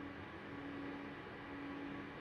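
Faint room tone: a steady hiss with a low, steady hum underneath.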